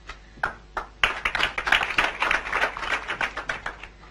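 Audience applauding in a hall: a few scattered claps, then full applause from about a second in that dies away just before the end.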